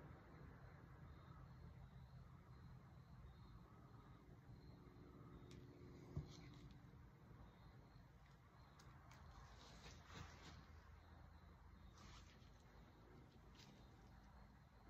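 Near silence: quiet room tone with a faint low hum, and a single faint click about six seconds in.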